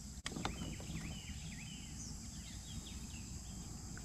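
A bird calling in a string of short whistled notes that dip in pitch and rise again, over a steady high drone of summer insects. A single sharp click comes near the start.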